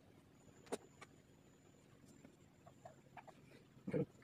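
Faint clicks and light taps of pipe cleaners being handled and bent over a table, with a louder thump just before the end. A faint high-pitched whine sits in the background.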